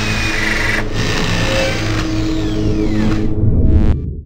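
Logo-sting sound design with a steady machine-like drone, and high whines that fall in pitch past the middle. It cuts off just at the end.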